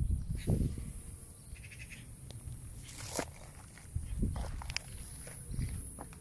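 Irregular footsteps crunching on dry grass and stony ground, a handful of separate steps, with a brief higher-pitched call about two seconds in.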